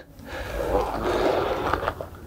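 An ab-wheel rollout on a hard floor: a steady rushing noise lasting a little under two seconds as the wheel is pushed forward.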